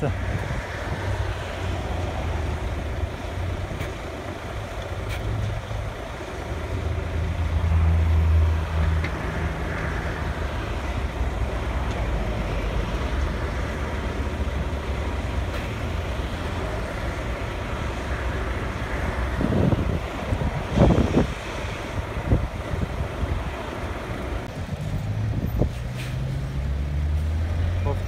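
Heavy diesel machinery at an aggregate plant, an excavator among it, running with a steady low hum that swells now and then. A short run of clattering knocks comes about two-thirds of the way through.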